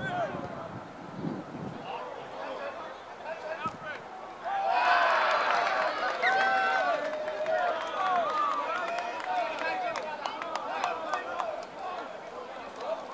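Several voices shouting and calling out across a junior rugby league field, rising sharply about four and a half seconds in as a tackle is made and carrying on in overlapping calls, with a few sharp claps near the end.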